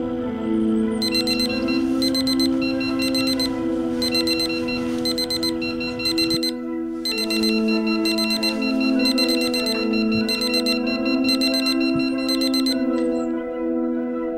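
Digital alarm clock beeping in rapid, evenly spaced groups of high beeps, starting about a second in, pausing briefly twice and stopping near the end, over ambient music with long held tones.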